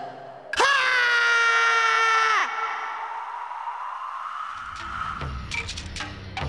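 A cartoon character's long scream as he falls, held on one pitch for nearly two seconds, then dropping away at the end. A faint, thin whistling tone follows.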